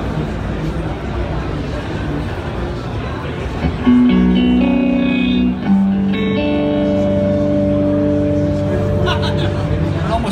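PRS electric guitar played through a Waves amp-model plug-in on a clean setting: about four seconds in, sustained chords start ringing, changing a few times, the last one held for several seconds.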